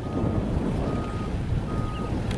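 Wind buffeting the microphone, a steady noisy rumble, with a faint high beep repeating about every second.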